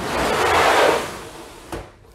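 A plastic snake tub sliding along a rack shelf, a scraping rush lasting about a second, followed by a short knock.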